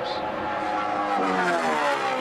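NASCAR Cup stock car's V8 engine at full throttle on a qualifying lap, passing by with its pitch falling in the second half.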